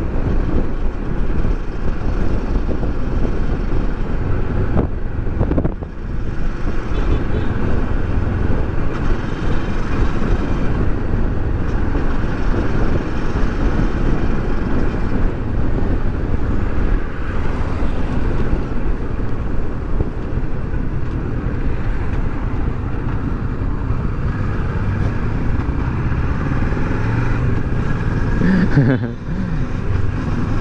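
Riding noise from a Kawasaki Versys 650 cruising steadily at about 60 km/h: wind rushing over the camera's microphone on top of the parallel-twin engine running.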